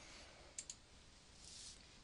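Near silence, with two faint short clicks close together about half a second in.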